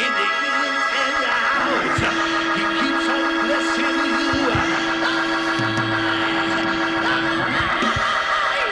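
Organ holding long sustained chords, one note held steady for most of the stretch, with brief low bass notes and a few sharp hits. Over it a man's voice chants in sliding, sung phrases through a microphone, the melodic preaching style of a sermon's climax.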